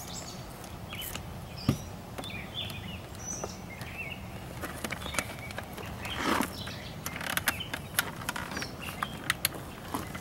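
Outdoor ambience with birds chirping off and on. There is a sharp knock a couple of seconds in, then a scrape and a few light clicks and taps near the end as a boat-mounted black light fixture is handled on the gunwale.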